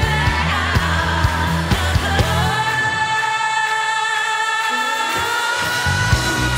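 Live schlager-pop band with singing: drums and bass play a steady beat for about two and a half seconds, then drop out, leaving long held sung notes over the remaining instruments. The drums and bass come back in at the very end.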